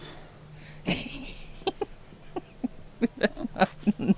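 A person laughing: a sudden burst of breath about a second in, then a run of short laughs, about three or four a second.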